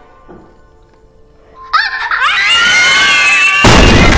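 Quiet for the first couple of seconds, then high-pitched screaming from several girls breaks out suddenly just under two seconds in. A loud crashing burst joins it near the end.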